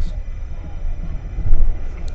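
Steady low rumble of a car's engine and road noise, picked up by a dashcam inside the cabin, with one louder low thump about one and a half seconds in.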